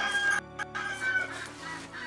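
Chickens clucking, with background music underneath.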